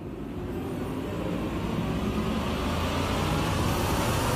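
A dramatic sound-effect swell, a rushing noise building steadily louder over the reaction shots, as the background score's held tones fade under it.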